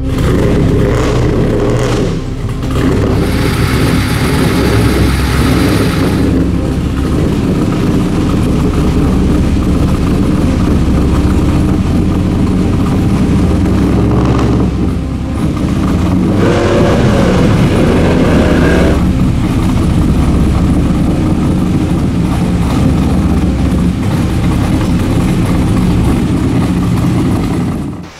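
Car engine running hard and revving, in several cut-together clips, with the revs rising and falling in places.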